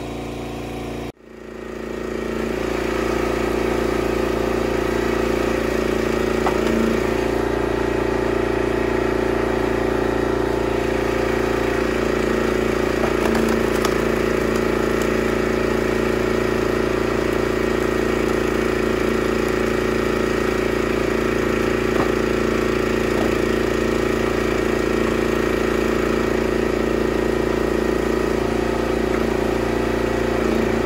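Engine of a homemade hydraulic log splitter running steadily at a constant speed. The sound drops out briefly about a second in, then comes back and holds steady.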